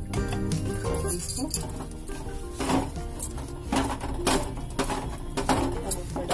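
Background music over a spatula scraping and knocking in a non-stick pan as lumps of jaggery are stirred to melt them.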